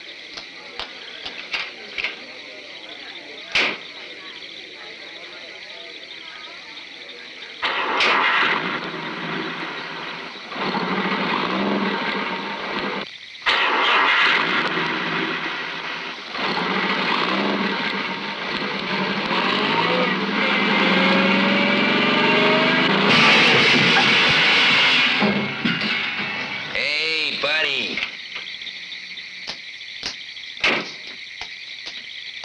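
Car engine starting and running loudly in uneven bursts, with a rising whine in the middle and a harsh, high scraping burst a few seconds before it dies away. Before it starts there are a few faint clicks.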